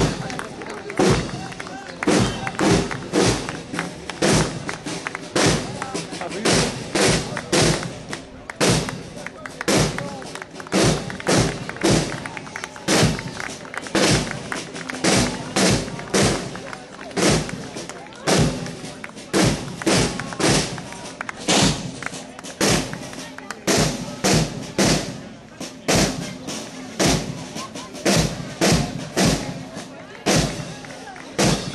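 Marching drum corps of snare and bass drums beating a steady march, with heavy strokes about once a second.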